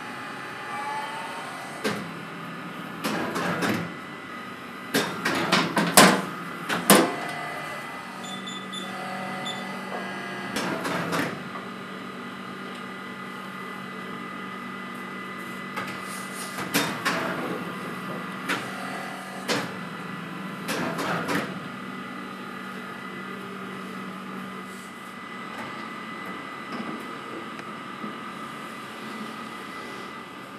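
A baumkuchen rotisserie oven runs with a steady hum, broken by bursts of sharp clanks and knocks as the cake spits are handled, the loudest in two clusters early and about midway.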